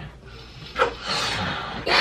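Two people blowing hard into latex balloons to inflate them by mouth, a breathy rushing sound with a short breath in between. It is quiet at first and grows louder from about a second in.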